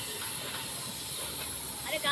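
Gravity-feed paint spray gun hissing steadily with compressed air as it sprays white paint onto a car body panel.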